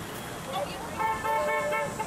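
A car horn honking in a quick series of short beeps of the same pitch, starting about a second in, over faint voices.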